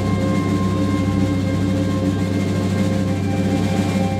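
Live band playing a slow, droning passage: held low and middle tones layered over a steady bass drone, with no clear drumbeat.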